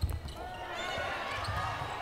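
Indoor volleyball rally: the ball thuds as it is played, and the crowd's voices rise and fall in a large hall.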